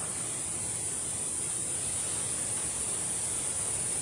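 Steady outdoor background hiss with a constant, high-pitched drone of insects and no other events.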